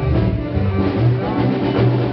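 Live band playing: a bass line of changing low notes under drums and other instruments.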